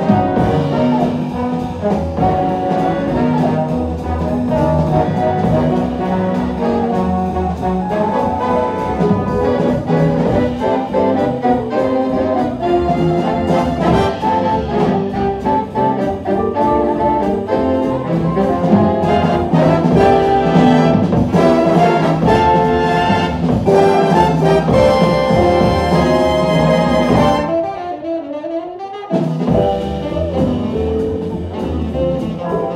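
A jazz big band plays live: saxophone, trombone and trumpet sections over drums, double bass and piano. Near the end the ensemble and rhythm section drop out for about two seconds, leaving a single line that slides up and down.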